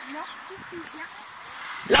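A dog, faint, giving a few short whines and yips over quiet background voices.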